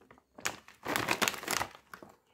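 A shiny plastic chip bag crinkling as it is handled and set down: a short crinkle about half a second in, then a longer crackling stretch.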